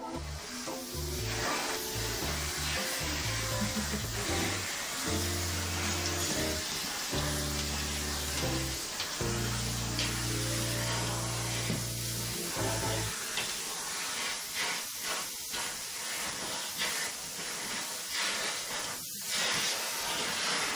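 Canister vacuum cleaner running steadily as its floor nozzle is drawn over a St. Bernard's coat. Background music with a low bass line plays under it and stops about 13 seconds in.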